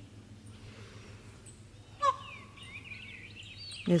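Birds calling. One loud, short held call comes about halfway through, followed by busy, overlapping high chirps.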